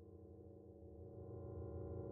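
Low, steady electronic drone of several held tones, faint and swelling louder.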